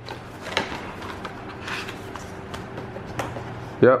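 Stiff cardboard packaging being handled: an unboxed laptop's black cardboard sleeve and box insert rubbed, lifted and set down, giving scattered scrapes and soft knocks. A short spoken "yep" comes near the end.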